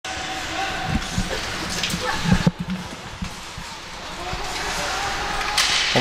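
Ice hockey game sound in the rink: a few low thuds from about one to two and a half seconds in, over a steady background of arena noise and voices, with a short hiss near the end.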